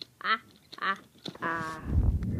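A person laughing in a put-on character voice: short pitched 'ha' bursts about two a second, ending in a longer drawn-out laugh. A low rumble starts just before the end.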